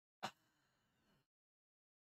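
Near silence, broken about a quarter second in by a brief vocal sound from a man at the microphone, a short breath or clipped syllable.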